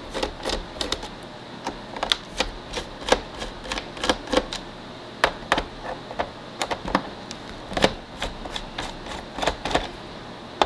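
Hand screwdriver turning out small screws from the plastic underside of a Roomba 675 robot vacuum: a run of irregular sharp clicks and ticks.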